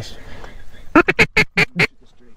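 Duck call blown in the blind: a quick run of about six short, loud quacks lasting about a second.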